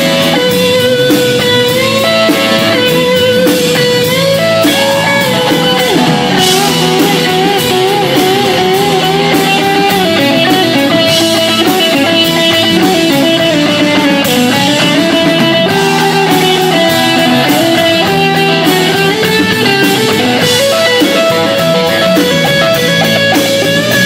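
Rock band playing live and loud: an electric guitar plays a lead line of long, wavering, bent notes over drums.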